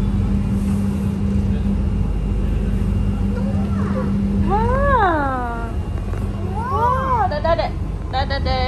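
Light-rail train running on an elevated track, heard from inside the car as a steady low rumble with a constant hum. Over it, a small child gives two rising-and-falling vocal calls, the first about halfway through and the second near the end.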